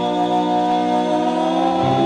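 Doo-wop vocal group singing a long held close-harmony chord, moving to a new chord near the end.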